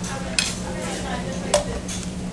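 Metal cutlery clinking against a plate twice, about half a second in and again about a second and a half in, over a steady low hum.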